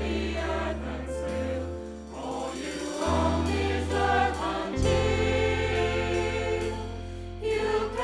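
A mixed choir singing together with a woman singing lead into a microphone, over instrumental accompaniment with held bass notes that change every second or two.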